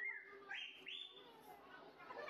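Three short, faint, high-pitched squeals from a young child, each sweeping up and then held, the last one the highest, all within the first second or so.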